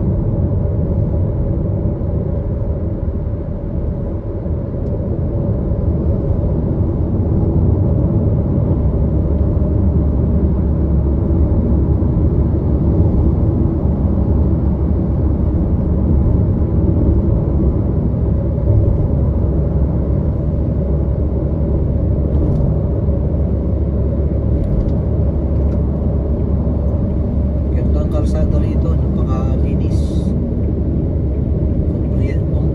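Steady low road and engine rumble inside a vehicle's cabin while it drives at expressway speed.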